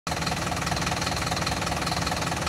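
Mercedes-Benz Vario 814D mini coach's four-cylinder turbo-diesel idling steadily.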